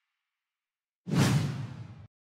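A whoosh sound effect with a deep low boom, starting suddenly about a second in, fading over about a second, then cutting off sharply: the transition sound of an outro logo animation.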